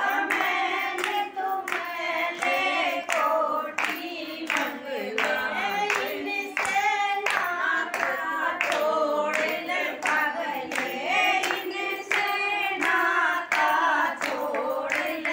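Women singing a Hindu devotional song (bhajan) without instruments, keeping time with steady hand-claps about twice a second.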